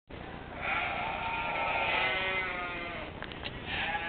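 Sheep bleating: one long drawn-out bleat, then a few light clicks and the start of another bleat near the end.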